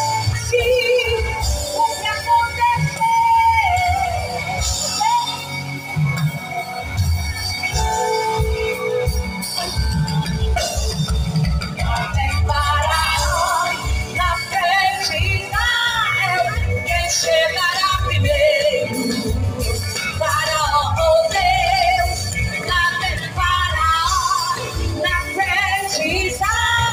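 Live Christian gospel music played loud over a stage sound system: a band with drums and bass under a woman singing lead.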